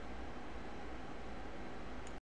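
Steady, even hiss of microphone noise and room tone, with no distinct sounds.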